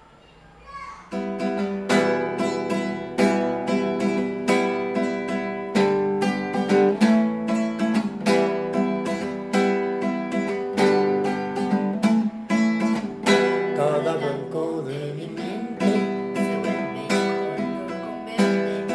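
Acoustic guitar strummed in a regular rhythm of chords, starting about a second in after a brief hush: the accompaniment's introduction before the singing comes in.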